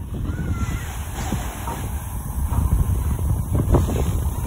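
Wind buffeting the microphone with a low, irregular rumble, over small sea waves washing onto a pebble beach.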